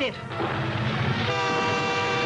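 Animated-series soundtrack: a low rumble, joined just over a second in by a steady, held horn-like chord.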